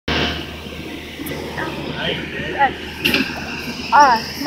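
Faint speech: scattered voice sounds and a hesitant "uh" about halfway through, over a steady low hum.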